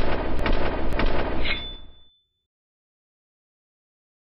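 Logo-animation sound effect: a sudden rumbling, crackling burst like an explosion that dies away within about two seconds, with a short high tone near its end.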